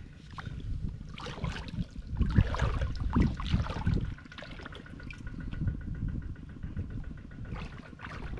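Shallow floodwater splashing and sloshing as a person's hands and legs move through it, in irregular bursts that are loudest between about one and four seconds in.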